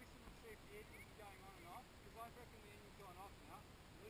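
Faint bird calls: many short chirps and warbling notes rising and falling in pitch, one after another.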